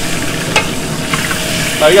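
Beef short ribs sizzling in hot grease in a sauté pan over a gas flame, with a sharp click of metal tongs against the pan about half a second in.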